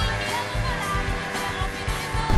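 Music from a film soundtrack with steady held notes, a voice faintly over it.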